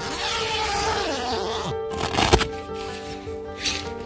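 Background music, with rustling handling noise over the first two seconds and one sharp knock a little over two seconds in.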